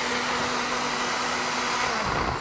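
Mayer personal blender running steadily, blending tofu until smooth: an even motor noise with a constant hum.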